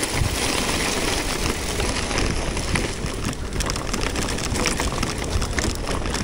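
Wind rumbling on the microphone of a handlebar-mounted camera, with bicycle tyres rolling over a dirt and gravel road as a loaded touring bike is ridden along. The noise is steady, with no single loud event.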